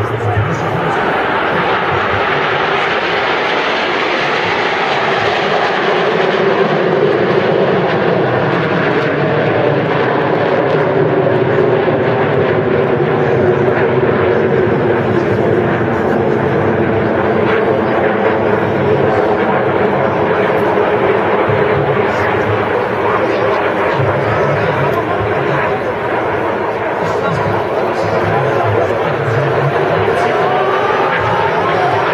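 A formation of Aermacchi MB-339 jet trainers flying overhead, their turbojet engines making a loud, steady rush with slowly shifting tones as they pass.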